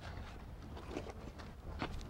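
Quiet outdoor background: a faint steady low rumble and hiss, with a couple of faint clicks near the end.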